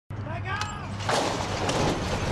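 Starting-stall gates springing open with a sudden metallic crash about a second in, followed by the noisy rush of racehorses breaking from the stalls at the start of a race.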